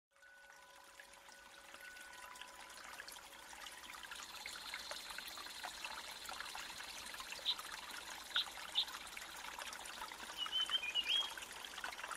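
Faint trickling stream water, fading in gradually, with a few brief high-pitched chirps in the second half.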